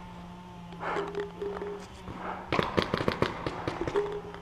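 Paintball markers firing a rapid string of shots, about eight a second, starting a little past halfway through.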